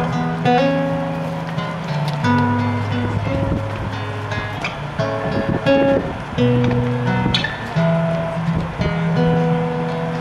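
Acoustic guitar playing an instrumental passage between sung lines, strummed and picked chords changing every second or two.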